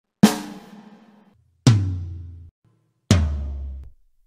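Toy electronic learning drum playing sampled drum sounds through its small built-in speaker as its pads are pressed. Three separate hits come about a second and a half apart, the later two deeper, each ringing briefly and then cutting off abruptly.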